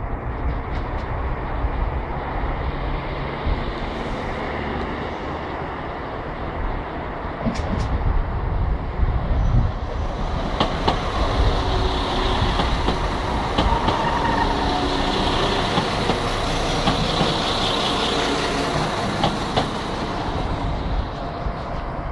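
Class 172 Turbostar diesel multiple unit approaching and then passing close by, with diesel rumble first. From about halfway a hissing wheel-on-rail noise with scattered clicks over rail joints builds as the carriages go past, easing off near the end.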